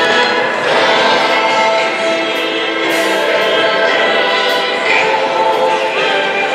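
Music with a choir singing, several voices holding notes together at a steady level.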